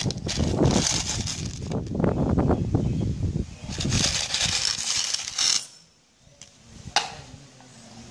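Broken bangle pieces rattling inside a plastic tub as it is shaken, then poured out and clattering onto a tiled floor, for about five and a half seconds. After a short hush there is a single sharp click near the end.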